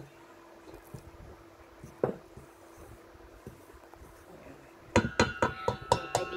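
Wooden spatula knocking against a glass mixing bowl of flour: one sharp knock about two seconds in, then a quick run of sharp taps near the end.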